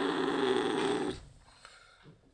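A cat's steady purr with a growl in it, from a cat that is unwell and being stroked. It stops just over a second in.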